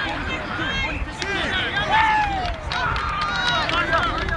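Indistinct overlapping voices of spectators talking and calling out, with one louder call falling in pitch about two seconds in, over a steady low rumble.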